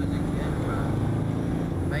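Car engine and road noise heard from inside the cabin: a steady low drone with a faint held engine tone, and a voice starting right at the end.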